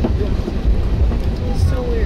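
Low, steady rumble inside an airliner cabin as the plane taxis, its engines at idle and its wheels rolling, with faint voices in the cabin.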